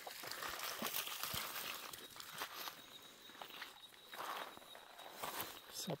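Faint, irregular footsteps crunching on the loose stones of a riverbank.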